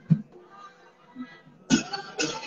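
Slow folk-dance music: sparse drum beats about a second apart under a faint melody, then the full band comes in louder with drum and melody near the end.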